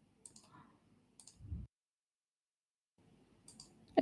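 A few faint computer clicks as the presentation is moved on to the next slide, with a stretch of dead silence in the middle.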